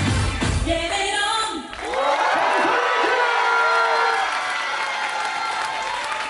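Pop dance music with a heavy beat that cuts out under two seconds in, followed by a crowd cheering.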